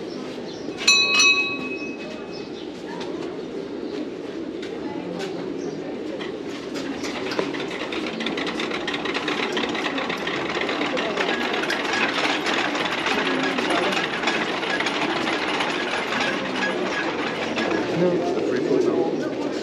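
A bell struck once about a second in, ringing briefly with a bright, clear tone. Then a crowd murmurs, over a rapid, continuous clatter of hand-turned Tibetan prayer wheels rotating on their spindles, growing busier through the middle.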